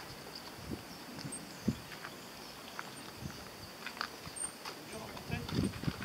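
Quiet outdoor ambience with soft, scattered footsteps and light ticks on a paved path; a voice starts up faintly about five seconds in.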